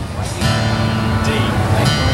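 Live country band starting the song about half a second in, with acoustic guitar strumming to the fore over the band.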